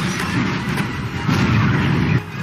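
Sci-fi battle sound effects: explosions and blaster fire in a dense, rumbling mix, with louder blasts surging about a third of a second in and again after about a second.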